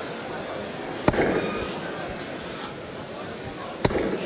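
Two darts striking a bristle dartboard with sharp thuds, one about a second in and one near the end, over the steady murmur of a large crowd in the hall.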